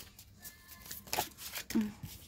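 Tarot cards being handled and drawn from the deck: a few short papery swishes about a second in.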